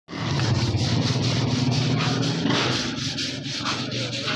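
A machine running steadily, with a low hum under a rasping noise that pulses about four times a second.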